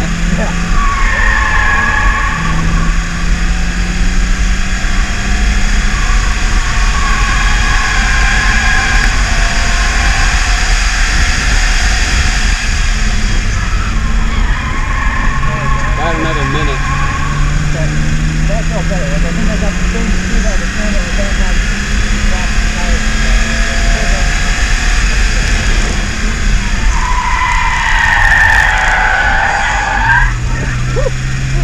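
Cabin sound of a BMW E36 328is's straight-six engine at track pace, its pitch rising and falling as the driver works the throttle, over a steady bed of road and wind noise. Short tyre squeals come several times as the car is pushed through corners, about a second in, around the middle, and again near the end.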